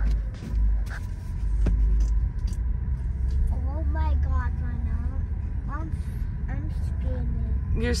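Low rumble of a car driving slowly over a concrete roadway, heard from inside the cabin, loudest in the first two seconds.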